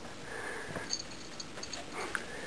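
A cat sniffing at a plastic laundry basket with his food inside, short noisy breaths, with a few faint light clicks in the second half.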